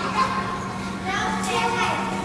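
Children's voices calling out and squealing at play in a large gym, with one longer high call rising and falling in the second half.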